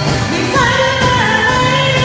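A woman singing a Tamil Christian worship song into a handheld microphone, backed by a live keyboard and drum kit. The sung melody glides between notes over a steady band accompaniment.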